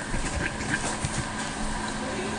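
Smartpen writing on paper: light scratching and small irregular ticks of the pen tip as a word is written out.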